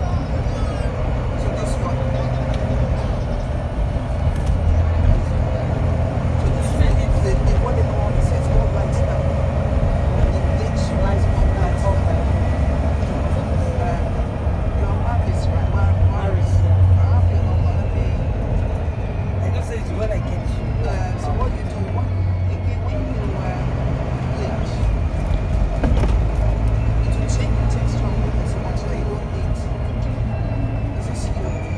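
Inside a Volvo B9TL double-decker bus under way: its six-cylinder diesel drones low, swelling and easing with the throttle, loudest about halfway through. A faint transmission whine slides slowly in pitch, over scattered interior rattles.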